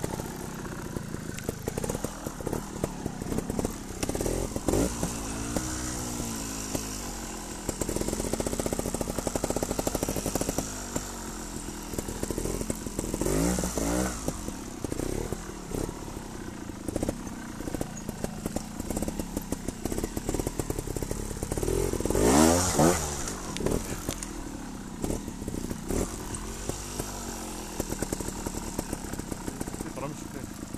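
Trials motorcycle engine running at low revs with repeated throttle blips, its pitch rising and falling several times. The loudest burst of revs comes about two-thirds of the way through.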